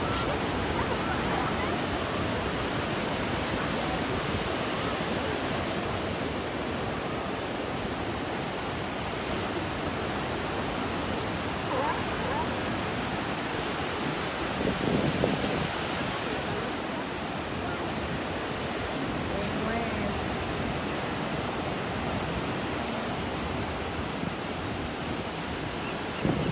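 Ocean surf breaking and washing onto a sandy beach, heard as a steady rush with no single wave standing out, swelling briefly about fifteen seconds in.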